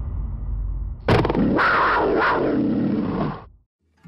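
A roar sound effect, an animal-like growl that breaks in suddenly about a second in and lasts about two and a half seconds before fading out. It follows the dying tail of the highlight music.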